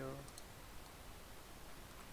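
Two faint computer mouse clicks in quick succession, a third of a second in, over low room tone.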